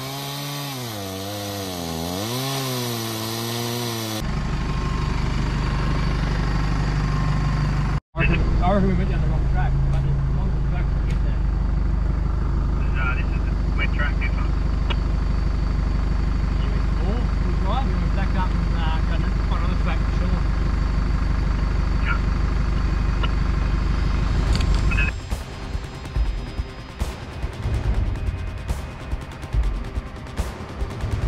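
A chainsaw cutting a fallen log, its engine pitch wavering under load, until a cut about four seconds in. Then the steady low rumble of a 4WD driving along a dirt track, which turns uneven near the end.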